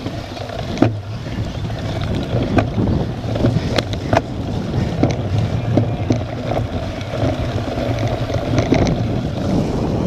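Wind buffeting the microphone of a bike-mounted action camera as a cyclocross bike rolls over rough, muddy grass, with frequent short clicks and knocks from the bike rattling over bumps.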